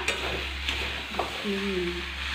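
Strips of potato and green vegetables frying in a pan on a gas stove: a steady sizzle, with a spatula stirring through them and a few light clicks against the pan.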